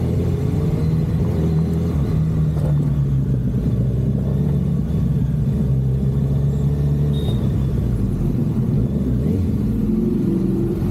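Kawasaki Ninja 1000SX's inline-four engine running steadily under way, its note shifting in pitch a couple of times, about two and seven seconds in, as the throttle changes.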